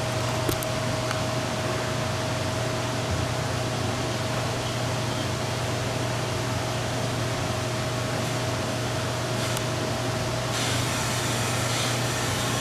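Steady mechanical hum with a constant faint whine, typical of running machinery or a ventilation fan, holding even throughout.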